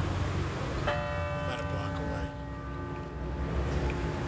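A large church bell struck once about a second in, its many overtones ringing out together and dying away slowly, the low hum lingering longest.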